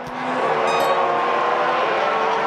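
Formula 1 cars' 1.6-litre turbocharged V6 engines running at speed, a steady engine note over a rushing noise, as a Mercedes runs wide across the grass at Turn 1.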